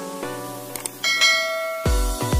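Music, then a click and a bright notification-bell ding about a second in that rings on. Near the end, electronic dance music with a heavy bass beat comes in.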